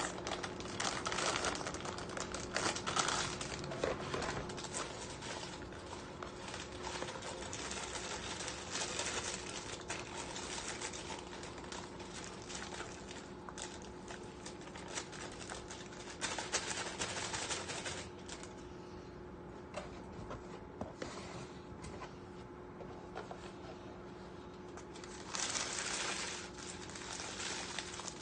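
Plastic bag of cake mix crinkling and rustling as it is handled and its powder shaken out into a plastic mixing bowl, quieter for a stretch in the middle and busier again near the end.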